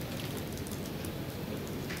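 Steady background hiss of room tone, with a few faint clicks and no speech.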